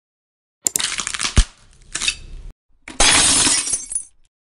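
Glass-shattering sound effect: a sharp crash about half a second in, breaking into crackling pieces, then a second, longer burst of noise from about three seconds in that cuts off at the end.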